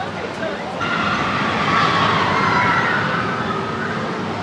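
Hyperspace Mountain's launched roller coaster rushing along its track with riders screaming, rising suddenly about a second in and fading near the end.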